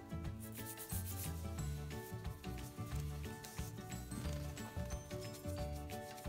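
A paintbrush scrubbing and dabbing paint onto paper, a scratchy rubbing in short strokes, over background music.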